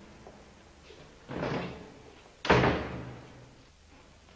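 A door being shut: a softer rush of sound about a second in, then the door closes with a sudden sharp impact about two and a half seconds in, the loudest sound, dying away quickly.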